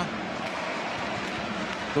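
Steady ice hockey arena background noise, an even hum of the crowd and play with no distinct events standing out.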